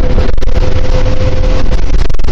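A Volvo B10TL double-decker bus's 9.6-litre Volvo D10A diesel engine running loud and steady under way, heard on board with a low rumble and body rattles. A steady whine rides over it for about the first second and a half, then fades.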